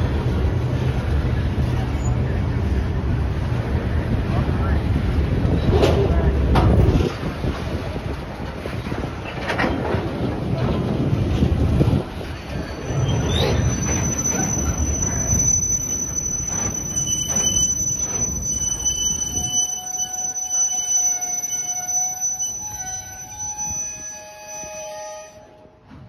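Freight train of steel gondola cars rolling past, a low rumble with the clicks of wheels over rail joints. From about halfway, high steady squeals of wheels and brakes join in as the train slows. The rumble dies away a few seconds before the sound drops off near the end, as the train comes to a stop.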